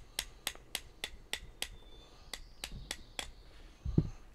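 Rapid series of sharp taps, about three a second with a short pause about halfway, as a rubber-faced mallet strikes the spine of an open Ferrum Forge Stinger titanium button-lock folding knife in a spine-whack test; the button lock holds and the blade does not close. A single louder thump near the end.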